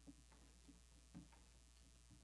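Near silence: room tone with a steady low hum and a few faint, irregular clicks.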